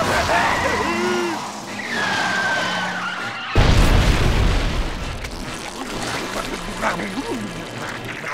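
Cartoon sound effects: gliding, whistling tones for about three seconds as a vehicle speeds off, then a sudden loud explosion boom with a long low rumble that fades away.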